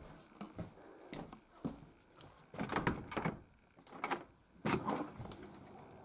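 Scattered knocks, clicks and rustles of a front storm door being pushed open and footsteps going out through it, with brief handling noise in between.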